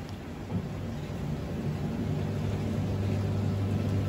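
Hisense WTAR8011G 8 kg top-loading washing machine spinning: a steady low mechanical hum that builds gradually louder.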